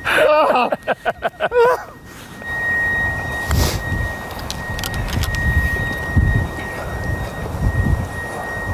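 Laughter, then wind buffeting the microphone, with one sharp click of a golf iron striking the ball on a chip shot about a second and a half after the laughter stops.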